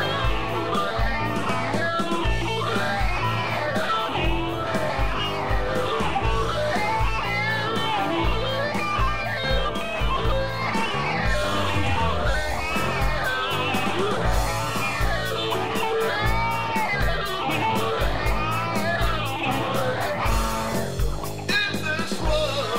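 Blues-rock band playing an instrumental passage: an electric guitar lead with bent, gliding notes over bass and a steady bass-drum beat.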